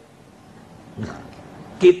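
A pause in a man's speech: low room noise, a faint short sound about a second in, then his voice resumes through the microphone near the end.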